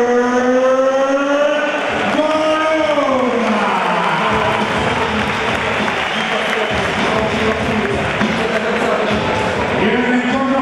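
A ring announcer drawing out a boxer's name in one long, gliding call over the microphone, then from about four seconds in the arena crowd cheering and applauding.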